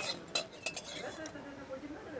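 Steel spoon clinking against a ceramic plate as it scoops into thick sauce, a few sharp clinks in the first second or so.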